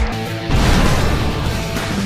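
Background music with a beat, overlaid about half a second in by a crashing transition sound effect of shattering stone that lasts to the end.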